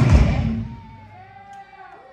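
Thrash metal band playing live with drums and distorted electric guitars, the song's final hit cutting off about half a second in. A faint wavering pitched tail follows.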